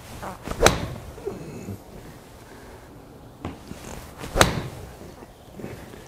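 Smithworks 56-degree wedge striking a golf ball off a hitting mat: one sharp crack just over half a second in, with a short ring of the small bay after it, on a strike a little low on the club face. A second sharp knock follows about four seconds in.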